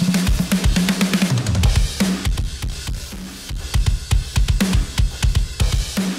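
A recorded drum kit, with kick, snare and cymbals, playing as a steady beat on a drum bus through a plugin's colour/drive stage. The drive is being raised with volume compensation linked, so the drums grow more driven without getting louder.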